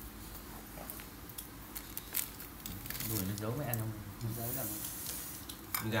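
Scissors cutting through the crisp skin of a whole fried chicken: a scatter of small snips and crunches. A low voice talks from about three seconds in to about five.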